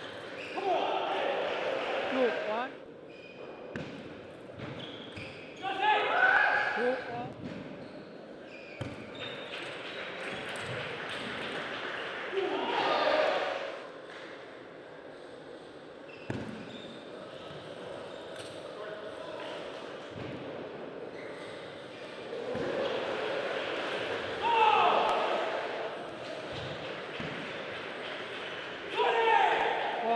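Table tennis ball clicking sharply off rubber-faced bats and the table in a series of rallies. Louder bursts of voices rise between points.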